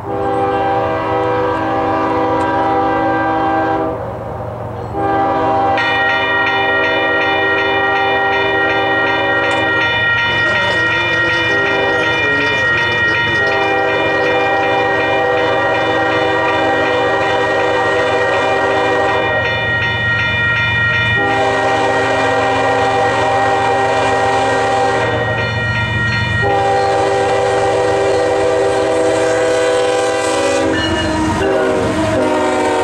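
A diesel freight locomotive's multi-chime air horn sounds a string of long blasts with brief breaks as the train approaches, over the low rumble of the engines. The lead locomotives reach the microphone near the end.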